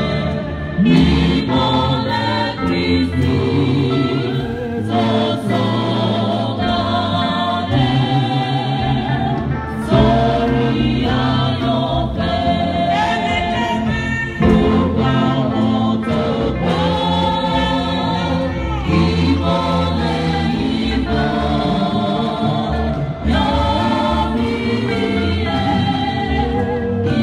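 Church choir singing a gospel praise song, led by a man singing into a microphone, sung continuously and amplified through the hall's loudspeakers.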